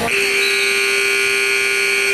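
Gym scoreboard buzzer sounding one steady, long buzz of about two seconds, then dying away; in wrestling this signals the end of a period.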